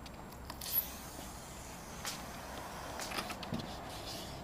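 Workers handling and stepping on rigid foam roof insulation boards: scattered scuffs and light clicks, the sharpest a brief hissing scrape about three-quarters of a second in.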